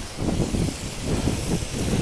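Strong cyclone wind gusting on the phone's microphone, with the hiss of car tyres passing on the wet road.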